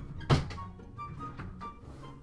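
Background music with a melody of short notes, and about a third of a second in a single loud thunk of a wooden dresser drawer being yanked open.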